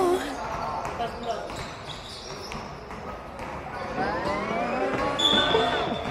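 Live court sound of a basketball game in a large hall: a basketball bouncing on the wooden floor with players' voices calling out. A brief high squeak comes a little after five seconds in.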